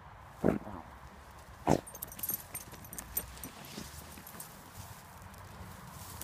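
Small dog hunting mice at a hole in dry grass: two sharp snorts into the hole about a second apart in the first two seconds, then light scratching and rustling of soil and dry grass.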